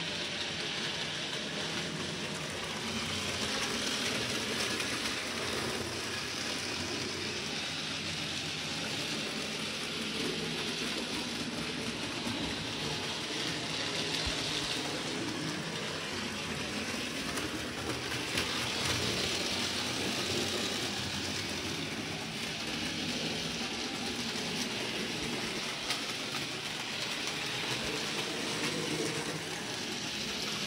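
A model railway locomotive running along the track: its electric motor and wheels on the rails make a steady whirring rumble that swells and eases as it moves nearer and farther.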